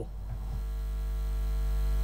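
Steady electrical hum with a low buzz and a stack of even overtones on the audio line, growing slowly and steadily louder.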